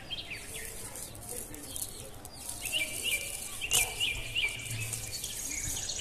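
Small birds chirping outdoors: scattered chirps, then a quick run of short repeated chirps from about halfway through, over a soft rustle of leaves as a clump of uprooted spring onions is handled.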